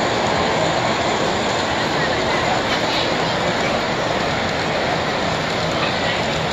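Large-scale model freight train rolling steadily along its track, heard over the constant babble of a crowded hall.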